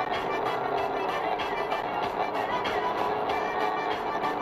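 Music that cuts in suddenly out of silence, with sustained tones and a steady beat.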